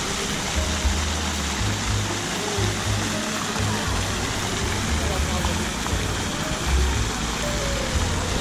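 Fountain jets splashing into a pool, an even rush of water, over loud background music with deep bass notes and the chatter of a crowd.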